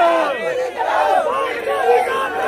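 A crowd of men shouting together, many raised voices overlapping at once.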